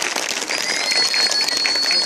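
Audience clapping, with a steady high whistle held over the applause from about half a second in.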